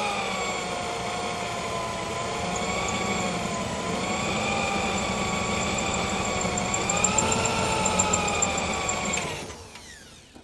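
Power drill running with a bit boring out spot welds in a car's sheet-steel floor, its motor pitch wavering under load. It winds down and stops near the end.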